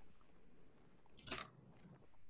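Near silence: room tone, with one short, faint noise a little over a second in.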